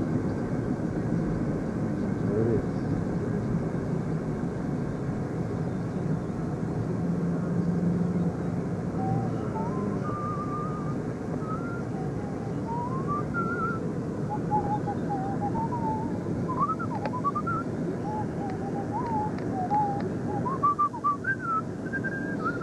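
Steady road and engine noise inside a moving car's cabin. From about nine seconds in, a person whistles a wandering tune over it, the pitch gliding up and down in short phrases until near the end.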